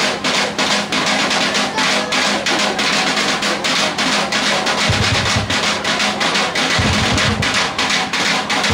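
Drumblek percussion band playing a fast, steady beat on drums made from used plastic barrels and tin cans. Deep low booms join in about five seconds in.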